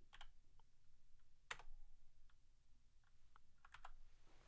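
Faint, sparse keystrokes on a computer keyboard: a few separate taps, a sharper one about a second and a half in, and a quick run of keys near the end.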